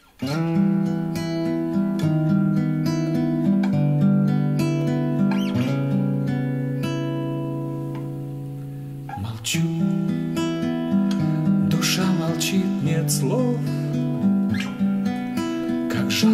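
Solo acoustic guitar playing a slow picked introduction to a song, chord notes entering one after another. About six seconds in, a chord is left to ring and fade for a few seconds before the picking resumes.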